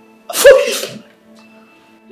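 A man's single short, sharp vocal outburst about a third of a second in, over soft sustained background music.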